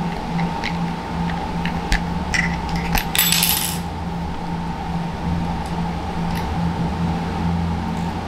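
Small hard plastic clicks and taps as a replacement lens is worked into a sunglasses frame, with a short rustle about three seconds in, over a steady low hum.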